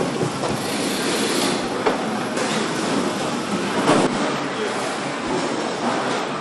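Steady factory machine noise, a continuous clatter and hiss with scattered clicks and sharper knocks about two and four seconds in.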